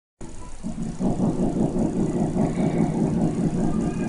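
Steel-string acoustic guitar playing the song's intro in a steady rhythm of repeated notes, starting softly and growing louder about a second in.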